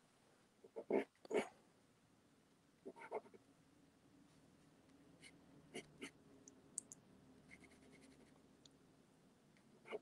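Soft pastel stick scratching across pastel paper in a few short strokes: about a second in, around three seconds, and a couple more near six seconds. A faint low hum sits underneath through the middle.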